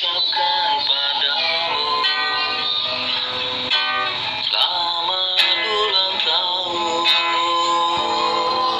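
A man singing with his own acoustic guitar accompaniment, heard as playback through a phone's speaker.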